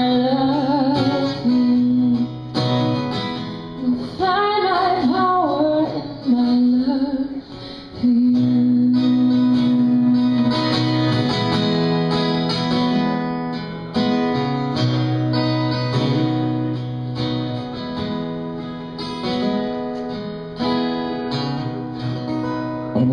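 Live acoustic guitar music with a woman singing over strummed chords for the first several seconds. The guitar then carries on alone with sustained chords to the close of the song.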